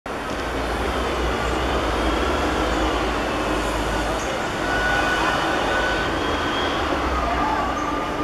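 Steady rumbling background noise on a football pitch during play, with faint distant voices.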